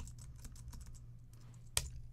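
Faint clicking of computer keyboard keys as the software is worked, with one sharper click near the end, over a faint steady low hum.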